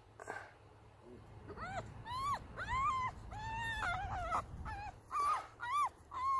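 Puppy whining on the leash: a series of short, high, arching whines that starts about a second and a half in, with one longer drawn-out whine in the middle. It is a protest at being led on the leash.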